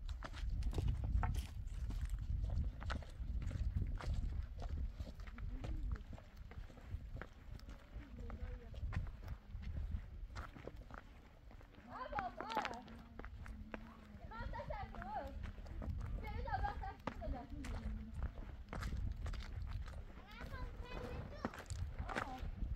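Footsteps crunching over stony dirt ground, with wind rumbling on the microphone. About twelve seconds in, and again near the end, come several short wavering calls.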